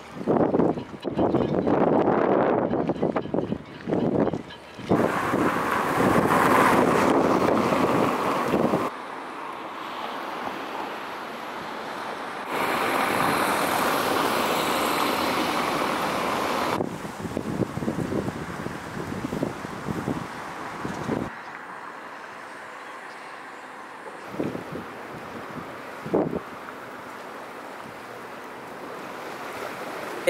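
Outdoor harbour-town ambience over a series of short clips, changing abruptly at each cut: wind on the microphone, lapping sea water and passing cars.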